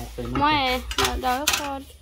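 Aluminium pot lid being handled, clinking sharply twice about half a second apart, under a person talking.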